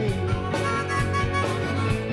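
Live indie rock band: harmonica playing held notes over strummed electric guitar and a steady drum beat, in a gap between sung lines.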